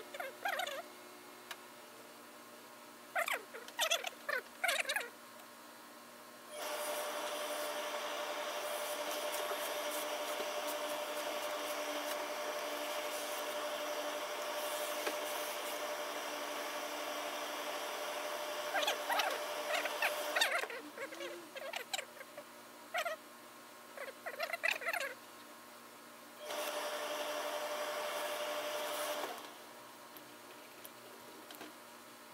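A steady hiss with one steady mid-pitched tone runs for about fourteen seconds, stops, and comes back briefly near the end. Between these stretches come short scratching and rustling sounds of hands and chalk working wool suit cloth on a cutting table.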